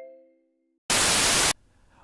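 The last held notes of a mallet-like jingle fade out, then a loud burst of white-noise static, about half a second long, starts and cuts off suddenly, used as a transition effect.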